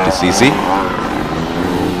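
Small 50cc motocross motorcycle engine running at a steady pitch, with a brief stretch of commentator's voice at the start.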